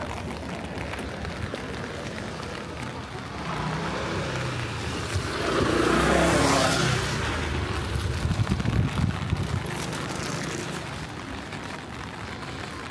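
A motor scooter passes close by, its engine sound swelling to its loudest about six seconds in and then dying away. Steady rain patters on an umbrella underneath.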